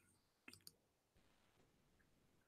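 Near silence with two faint, brief clicks about half a second in.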